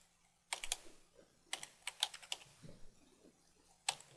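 Computer keyboard typing, faint quick keystrokes in short bursts with gaps between them.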